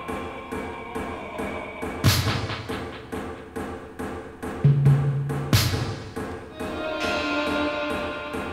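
Experimental tribal electronic music: two heavy, booming drum-machine hits about three and a half seconds apart, each ringing out, over a steady pulsing backdrop with faint ticks. A low synth note is held briefly just before the second hit, and a short higher note sounds near the end.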